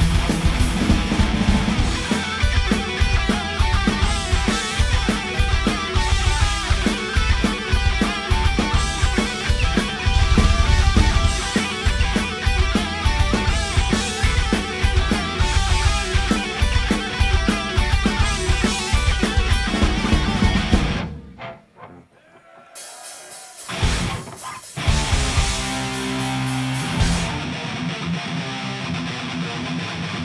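Live heavy metal band playing loud: distorted electric guitars, bass and a fast, steady drum beat. About two-thirds of the way through the music cuts off suddenly for two or three seconds, then the guitars come back in, a little quieter.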